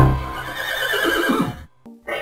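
A horse whinnying: one quavering call that starts loud right at a closing music note and fades out over about a second and a half.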